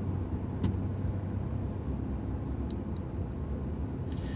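Steady low rumble of a car's cabin while it waits in traffic, engine idling and other cars passing outside. A single click sounds about half a second in, and two faint ticks come near the end.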